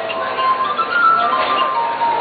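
Glass harp: water-tuned wine glasses played by rubbing their wet rims with the fingertips, giving pure ringing tones that are held, overlap, and step from one pitch to the next in a melody.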